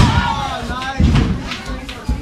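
Two heavy thuds on a wrestling ring's canvas, one at the start and one about a second later, from wrestlers' bodies and a strike landing. Men in the crowd shout between them.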